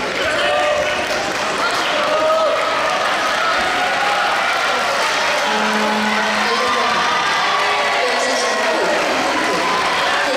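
Crowd of many voices shouting and cheering at once, at a steady level throughout.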